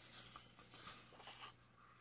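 Faint rustle and swish of a paperback book's paper page being turned, lasting about a second and a half.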